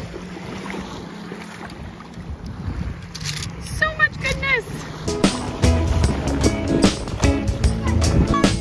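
Wind on the microphone and light shore water for the first few seconds, with a few short high-pitched calls around four seconds in. Background music with a steady beat comes in about five seconds in and carries on after that.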